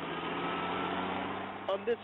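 Bulldozer engine running steadily, a low even hum with a haze of machine noise. A man starts speaking near the end.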